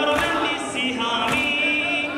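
Men's voices singing an Arabic Shia mourning lament (latmiya) together, with massed hands striking chests in time, landing as sharp claps about once a second, twice here.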